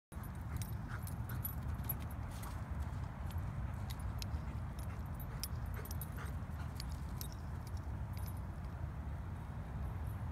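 Light metallic clicks and jingles, like a dog's collar tags, scattered irregularly over a steady low rumble, thinning out near the end.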